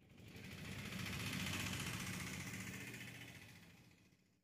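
Small engine of a Piaggio Ape three-wheeled goods carrier running close by, growing louder to a peak mid-way and then fading away.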